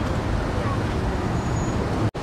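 Steady road traffic noise from vehicles at a busy curbside, with a low rumble.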